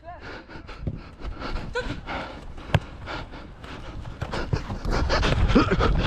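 Heavy panting of a footballer running hard, close to the microphone of the camera he wears. There is one sharp knock about three seconds in, and a short laugh near the end.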